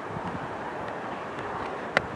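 A steady, even rush of outdoor background noise on an exposed hilltop, with one short click near the end.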